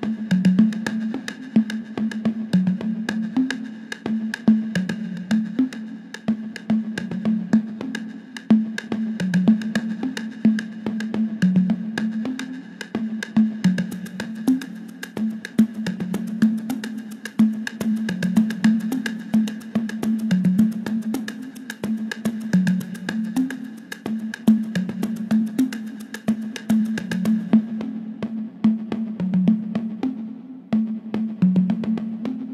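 Roland TR-808 drum machine percussion pattern at 108 bpm, played without the drum kit. Low pitched drum hits alternate between two pitches under a steady high ringing tone and rapid high ticking. The high ticking drops out about three seconds before the end.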